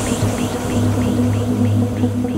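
Uplifting trance track in a drumless stretch: a sustained low synth pad and bass hold steady under a quick repeating synth figure, about five notes a second.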